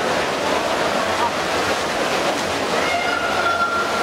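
Freestyle swimmers splashing through their strokes, a steady wash of churning water mixed with voices from around the pool. A drawn-out high tone rises out of it in the last second.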